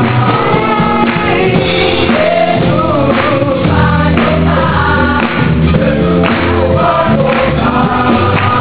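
A large church choir singing a gospel worship song with band accompaniment, sustained low instrument notes underneath the voices.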